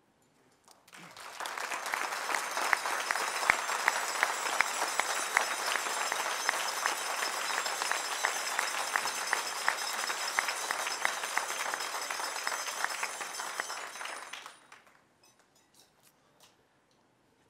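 Audience applauding: many people clapping, with a few sharp claps close by standing out. It starts about a second in, quickly builds to a steady level, and dies away near the end.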